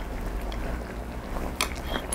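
A person quietly chewing a mouthful of tender braised chicken, over a steady low hum, with one sharp click about one and a half seconds in.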